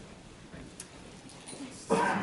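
Quiet lecture-room tone with a faint click about a second in, then a person's voice starting abruptly just before the end.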